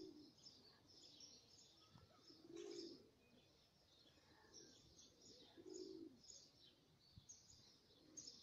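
Faint birdsong: many short high chirps repeating throughout, with three separate low calls about three seconds apart, near the start, middle and end.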